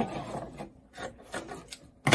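Dressmaking scissors snipping into the edge of polar fleece, a few faint, short cuts to make a fringe.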